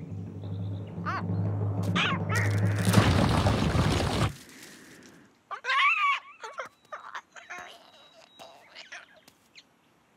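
Cartoon soundtrack: tense music with a low sustained drone swells into a loud crescendo and cuts off suddenly about four seconds in. Then comes a cartoon ostrich character's shrill warbling shriek, followed by small scattered sound effects.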